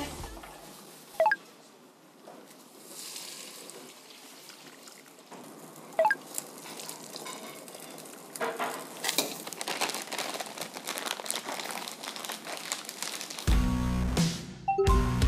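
Kitchen clatter over quiet background music: two sharp metallic clinks that ring briefly, as of a ladle striking a steel pot, then a busier run of clattering utensils and pans in the second half. Music with a beat and bass comes in near the end.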